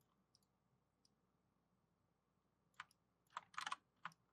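Near silence broken by a few faint computer clicks: a single click about three seconds in, then a quick run of several clicks just before the end.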